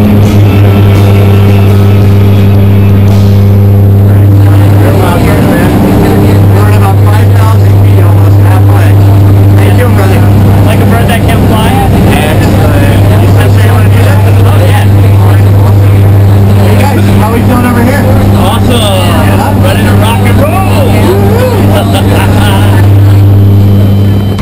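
Propeller-driven jump plane's engine drone heard inside the cabin, loud and steady at one low pitch, with voices calling out over it.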